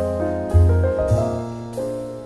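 Background piano music, a new chord struck about every half second and left to ring.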